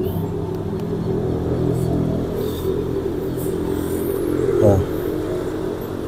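A motor running steadily, an even low hum made of several steady tones.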